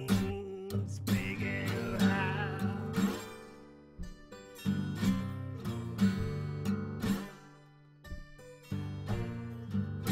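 Acoustic guitar playing a slow blues riff of separate plucked notes, in phrases that die away and start again. A wavering high line sounds over it in the first few seconds.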